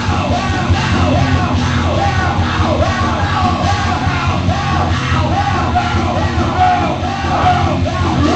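Live rock band playing loudly with a singer shouting the vocal line over guitars, bass and drums.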